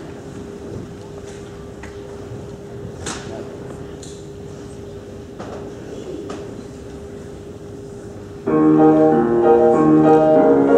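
Quiet hall with a faint steady hum and a few small knocks and rustles, then near the end a piano suddenly starts playing chords loudly: the accompaniment's introduction to the choir's song.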